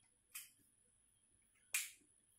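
Two sharp clicks about a second and a half apart, the second louder, from a whiteboard marker being handled.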